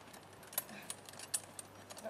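Faint, light metallic clinks of a driving horse's harness hardware jingling, a few scattered ticks over two seconds.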